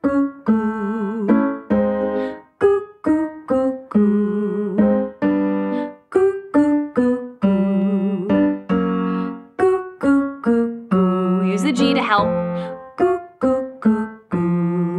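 Roland digital piano playing a run of short staccato notes and chords, with a woman singing short 'goo' notes along in a pitch exercise. Some notes are held longer with vibrato.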